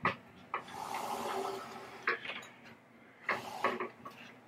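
A pinball machine cabinet on furniture sliders being pushed across carpet: a soft rubbing slide with a few light knocks from handling the cabinet.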